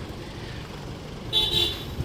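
Isuzu D-MAX's 3.0-litre four-cylinder turbo-diesel idling, a low steady rumble. A brief high-pitched, horn-like toot comes about one and a half seconds in.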